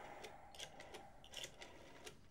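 Faint, irregular mechanical clicks from a desk telephone being dialed.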